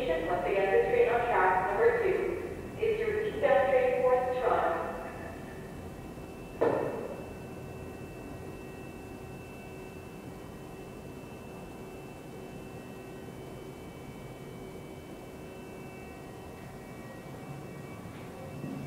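Station public-address announcement over a loudspeaker for the first few seconds, then a single sharp thump about seven seconds in, followed by a steady low hum with a faint thin whine while a GO train passes slowly on the far track.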